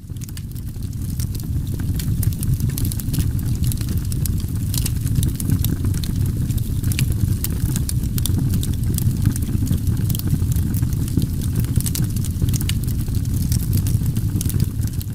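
A steady low rumble with many sharp crackles and pops running through it, fading in over the first second or so.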